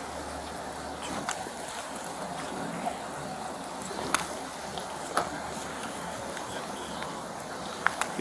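Steady hiss of rain on wet pavement, with a few sharp clicks.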